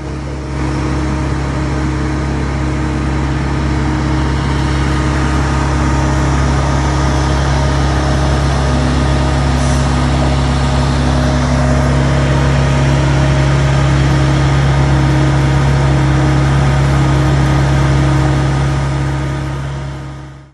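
An engine running steadily with an even hum that does not rise or fall, fading out at the end.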